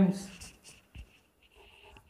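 Chalk scratching on a blackboard in a few faint, brief strokes, just after a man's voice trails off.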